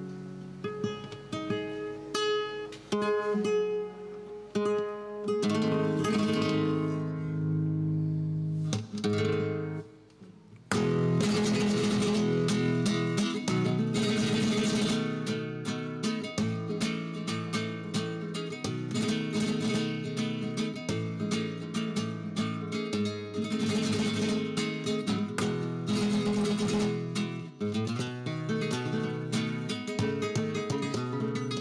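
Solo flamenco guitar playing the introduction to tientos. For the first ten seconds it plays separate plucked notes and chords that ring out. After a brief pause it breaks into fast, dense strummed chords from about eleven seconds on.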